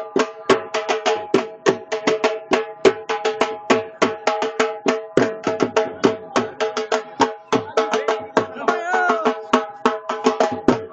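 Dhol, a large rope-tensioned barrel drum, beaten in a fast, dense rhythm of many strokes a second, with a steady held tone sounding underneath.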